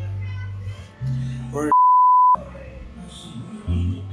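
A single censor bleep: a pure, steady high beep about half a second long that cuts in mid-sentence, blanking out the speech and the background music while it sounds. Background music with a heavy bass runs under speech around it.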